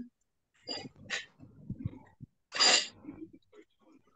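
Short breathy noises from a person, with one sharp, louder burst of breath about two and a half seconds in.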